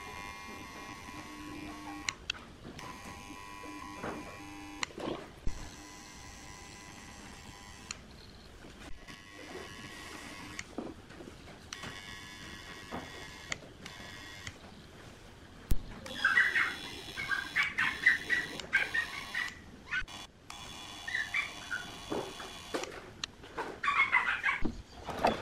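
Small clicks and taps of wire and tools handled at a workbench while wires are fitted to connector terminals, over faint steady tones. In the last third come clusters of high chirps.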